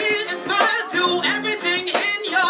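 Live ska band playing, with a woman singing lead over keyboard and drums; her voice wavers and bends in pitch through held notes.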